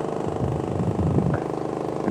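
Engine fitted with a Pantone GEET fuel processor, idling steadily.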